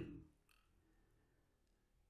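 Near silence in a pause in the narration. A spoken word fades out at the very start, then only a couple of faint clicks remain.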